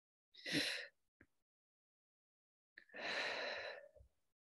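A woman taking audible breaths of an essential oil's scent from a small bottle held at her nose: a short breath about half a second in and a longer one about three seconds in, with a quiet pause between.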